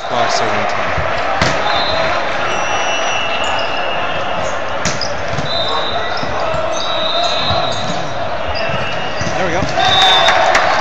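Volleyball rally on an indoor hardwood court: a steady hubbub of spectators' and players' voices, with a few sharp thuds of the ball being struck and bouncing. Short, high squeaks from sneakers on the floor come through several times.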